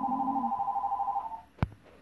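Electronic telephone ringer trilling: two high tones warbling rapidly, about twenty pulses a second, that stop about a second and a half in. A single sharp click follows near the end.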